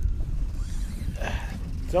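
Wind rumbling on the microphone, with a faint voice in the background about a second in.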